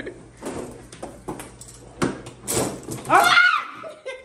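A few sharp knocks from a foosball game, then a woman's loud, high squeal falling in pitch about three seconds in.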